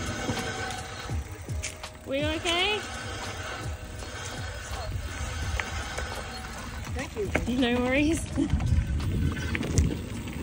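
Wind on the microphone and the rumble of an e-bike rolling down a gravel road. Two short wavering calls stand out, one about two seconds in and one near eight seconds.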